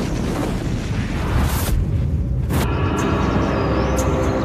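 Dramatic title-card sound effect: a deep rumbling boom with a rush of noise, then a sharp hit about two and a half seconds in, after which music with held tones comes back in.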